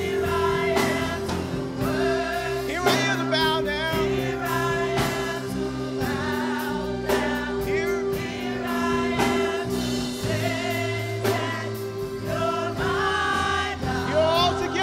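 A gospel praise team singing together over band accompaniment, with long held chords, a moving bass line and steady drum hits.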